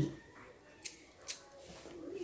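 Two short, sharp clicks about half a second apart, with little else heard.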